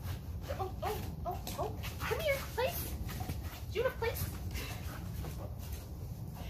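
Golden retriever puppy whining in a string of short, high squeaks, mostly in the first four seconds, over a steady low rumble.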